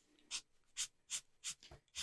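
Marker nib rubbing across tracing paper in four short, faint strokes, a little under half a second apart, laying in shading.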